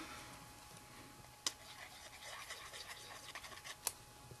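Faint scratching and rustling of paper pieces and a small glue bottle being handled as a paper owl is glued onto a bookmark, with two sharp clicks, one about a second and a half in and one near the end.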